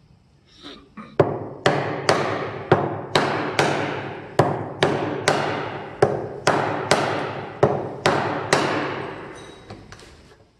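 Metal-headed hammer striking the handle of a Narex mortise chisel as it chops a mortise in a block of wood. There are about fifteen sharp blows at a steady pace of about two a second, starting about a second in and stopping near the end. Each blow has a short ringing tail.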